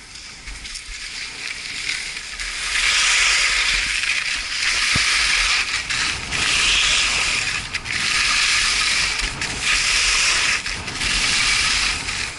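Skis carving turns on hard-packed groomed snow: a scraping hiss that builds as speed picks up, then swells and eases about every second and a half with each turn, over a low rumble of wind on the microphone.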